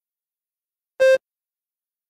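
A single short, mid-pitched electronic beep about a second in: the test's cue to start speaking the response.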